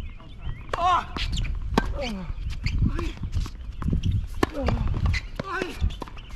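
Tennis rally on a hard court: sharp racket strikes on the ball and quick footsteps, with short cries mixed in.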